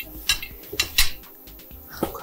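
Metal forks and knives clinking against plates as two people cut and eat: several light, sharp clinks, the sharpest about a second in.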